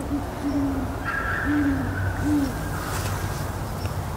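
Great horned owl hooting: four deep hoots, the middle ones longer, over a steady low hum.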